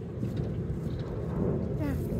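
A low, steady rumbling noise with a few faint small clicks, and a voice starting near the end.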